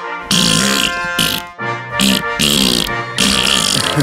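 Background music in short stop-start phrases with low, brassy-sounding notes.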